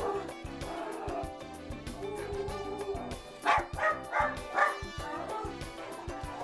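West Highland white terrier barking excitedly at a television, four short sharp barks in quick succession about three and a half seconds in, over background music.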